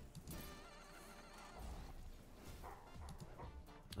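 Faint sound effects and music from the Hellapeños online video slot as the reels spin and bonus symbols land, triggering the free-spins round.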